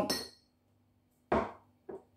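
Metal teaspoon and spice jar knocking against a ceramic mug while ground ginger is spooned into tea: a ringing clink at the very start, a sharper knock about a second and a half in, and a faint tap near the end.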